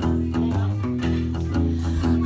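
Acoustic guitar played in a blues-rock accompaniment, a run of picked notes and ringing chords with no singing over it.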